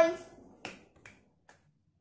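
The tail of a boy's spoken word, then a single sharp click and two fainter ticks about half a second apart.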